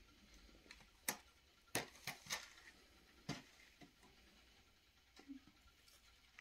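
Faint, scattered sharp clicks and light taps, about seven of them, with quiet between, like small hard objects being handled.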